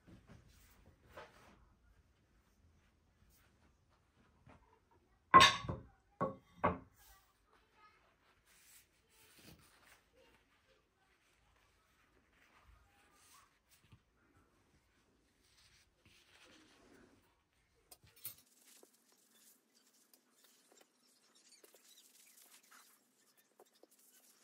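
Plates being set down on a cloth-covered table: three knocks in quick succession about five seconds in, the first the loudest. Otherwise faint handling sounds as napkins and forks are laid out.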